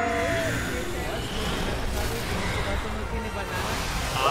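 A mixed sound track of an anime episode and several reactors' microphones: a brief voice at the start, then a steady low, rushing noise with faint voices under it.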